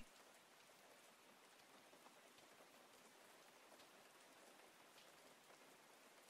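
Faint recorded rain ambience: a steady hiss of rain with a few soft ticks.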